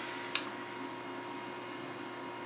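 Quiet room tone: a steady hiss with a faint hum, broken once by a short click about a third of a second in.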